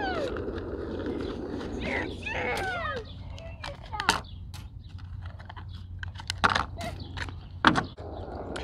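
Small plastic clicks and rattles as the metal body clips are pulled and the hard plastic body is lifted off a small RC crawler's chassis: a few sharp clicks, the loudest near the end.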